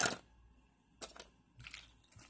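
A few faint clicks and light rustling of small plastic doll accessories being handled and gathered up by hand: a sharp click about a second in, then a brief soft rustle.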